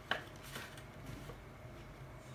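Faint rustling of a ribbon and a paper bag being handled as a knot is tied, with one short crinkle near the start, over a low steady hum.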